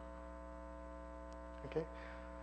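Steady electrical mains hum with a stack of even overtones, running under the lecture recording. A short spoken "OK?" comes near the end.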